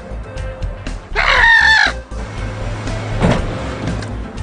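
A rooster crowing once, about a second in, over background music with a steady beat. A dull thump follows near the end.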